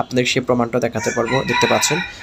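A man's voice, and in the second half a long, high call held at a steady pitch for about a second, like a bird or fowl call in the background.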